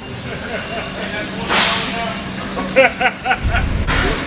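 A loud, sharp swoosh about a second and a half in, with faint voices and brief laughter around it, then a deep low rumble starting near the end.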